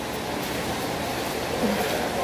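Steady, even background noise of a mall food court, like ventilation running, with no clear event.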